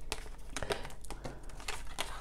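Faint rustling and a few light clicks of tarot cards being handled and drawn from the deck.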